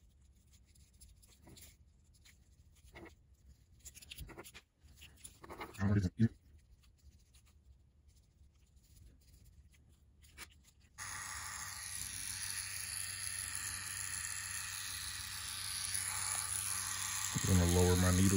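Faint scratching of a ballpoint pen drawing on orange peel, then about eleven seconds in a cartridge tattoo machine switches on and runs with a steady hum.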